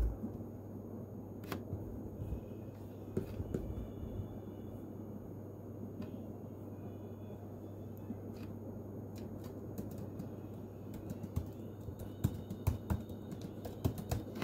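Light taps and clicks of fingers typing on a device, sparse at first and coming faster near the end, over a steady low hum.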